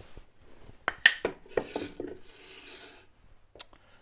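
Wooden boards handled on a workbench: a few sharp knocks about a second in, then a soft rubbing scrape, and a single click near the end.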